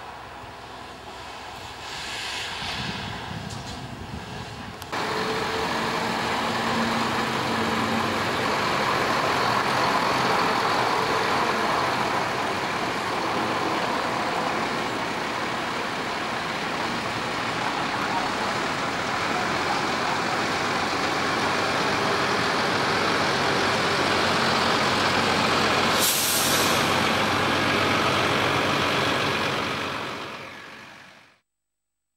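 Renault lorry's diesel engine running as the tractor unit and low-loader trailer move off, the sound getting suddenly louder about five seconds in. A short hiss of air brakes comes near the end.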